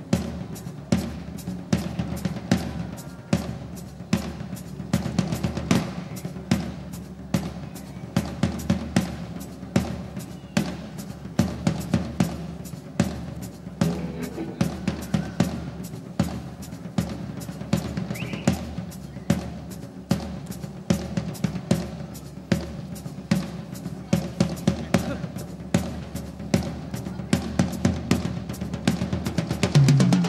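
A rock drum kit played solo live: a steady, driving run of bass drum, snare and tom strokes with cymbals.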